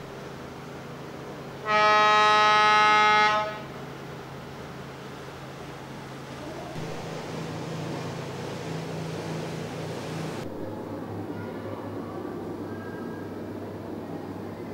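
A loud horn sounds one steady note for nearly two seconds, starting about two seconds in, followed by a low rumble.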